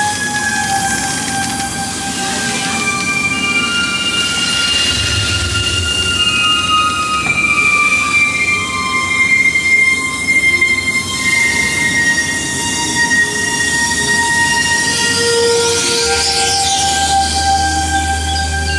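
Dark-ride vehicle wheels squealing on the track: several long, high squeals that overlap and slowly slide in pitch.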